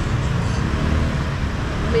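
Steady street traffic noise, a continuous low hum of motorbike engines and tyres from a busy road.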